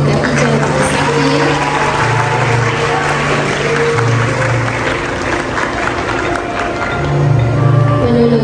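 Audience applauding over background music, the clapping going on steadily throughout.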